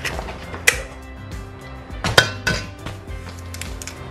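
Eggs being cracked against a stainless steel mixing bowl: three sharp taps, one a little under a second in and two close together just after two seconds.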